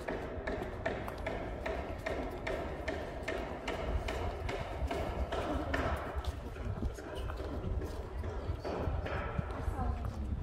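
Footsteps on stone paving, a steady run of steps from people walking, with faint background voices.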